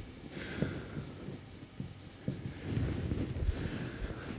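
Faint scratching of a marker pen drawn across a whiteboard in short strokes, with a few light knocks.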